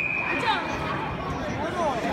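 Voices and chatter echoing around a sports hall, with the faint tail of a referee's whistle blast fading out in the first second.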